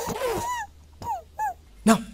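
A child's voice letting out a few short whimpering cries of pain, each sliding down in pitch, after being caned. A sharp smack comes just before the end.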